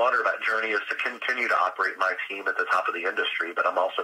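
Speech only: a man talking steadily in an interview.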